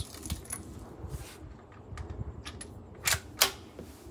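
Metallic clinking and small clicks of .44 Magnum cartridges being picked from their box and handled at the bench, with two sharper metallic clicks about a third of a second apart near the end.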